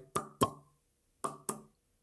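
A man making quick popping sounds with his mouth, two pairs of short pops about a second apart, mimicking the way street touts in Thailand advertise ping pong shows.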